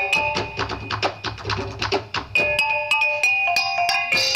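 Percussion music with quick, sharp strokes several times a second and ringing pitched notes from struck mallet instruments, playing as dance accompaniment.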